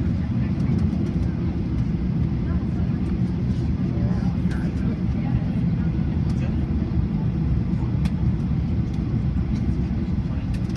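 Cabin noise of a Boeing 737-800 taxiing: a steady low rumble from its CFM56 jet engines at taxi power, heard from inside the cabin over the wing.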